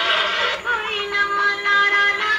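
Film song with singing playing. About half a second in it cuts to an older, duller-sounding recording, where a singer holds one long note over the accompaniment.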